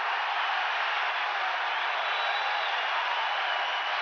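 Large arena crowd cheering and applauding in a steady roar, a wrestling audience's reaction to a big spear.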